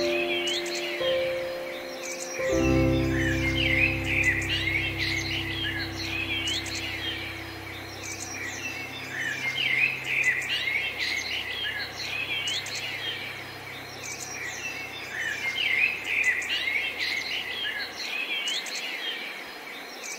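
Many songbirds chirping and singing continuously over a soft piano. A piano chord struck about two and a half seconds in rings on and slowly fades, leaving only the birdsong near the end.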